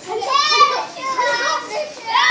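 Boys' high-pitched voices calling out and shouting as they play.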